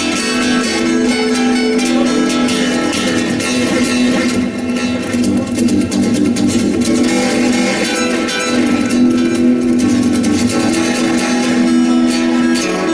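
Solo acoustic guitar in a fast, virtuosic improvisation: dense runs of plucked notes, busier and more percussive around the middle and again near the end.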